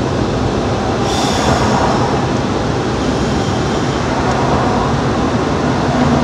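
Steady road and engine noise inside a moving car's cabin, with a brief rise in hiss about a second in.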